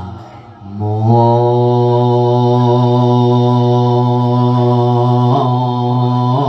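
A monk's voice chanting a Thai sung sermon (thet lae) into a handheld microphone: a falling note ends at the start, then after a short pause he holds one long, steady note from about a second in, which starts to waver in a sung ornament near the end.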